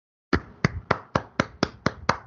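Real hands clapping, a steady run of sharp claps at about four a second, starting about a third of a second in.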